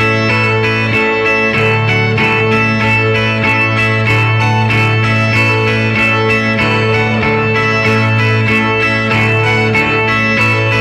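Two violas caipira, Brazilian ten-string guitars, playing an instrumental introduction with steady, quick plucked picking over a sustained low bass note.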